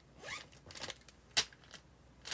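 Handling noise close to the microphone: a few short rustling scrapes, one rising quickly in pitch, then a sharp click about two-thirds of the way in and some faint ticks.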